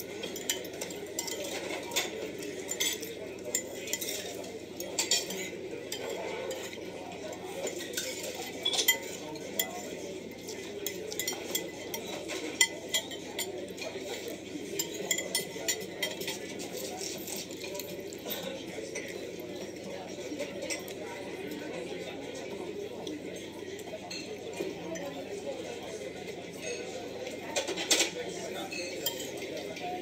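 Cutlery clinking against dishes in scattered sharp taps as someone eats, over a steady murmur of restaurant chatter.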